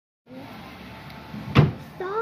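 Faint steady background hiss, broken about one and a half seconds in by a single sharp, loud knock with a brief ring.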